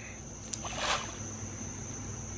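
Fish feed pellets spattering onto a pond's surface about half a second in, a brief hissing splash, while crickets keep up a steady high chirring.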